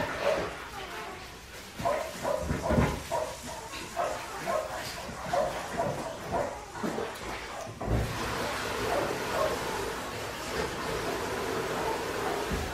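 Five-week-old Australian Shepherd puppies yipping and whining in a run of short, high calls. About eight seconds in there is a thump, after which a steady background hum runs on.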